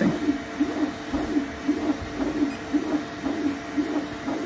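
Elegoo Neptune 4 Plus FDM 3D printer at work: its stepper motors whine in short rising-and-falling tones, about three a second, as the print head sweeps back and forth laying down filament.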